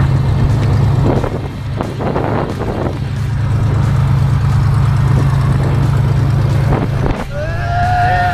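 Single-engine light aircraft's piston engine running with a steady low drone, with gusts of wind on the microphone. Near the end a voice calls out with a rising and falling pitch.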